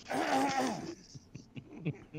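Men laughing: a loud burst of laughter for about the first second, then it trails off into quiet chuckles and breaths.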